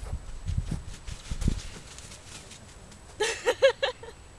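Low thumps and rustling, then about three seconds in a small dog gives about four quick, high yaps in a row.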